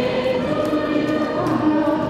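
A group of guests singing a birthday song together in chorus, with hand clapping.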